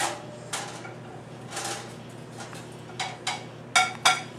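A plate and a countertop toaster oven being handled while bread is loaded for toasting: a series of about six sharp clinks and knocks of dishware and the oven's door and rack, the loudest near the end.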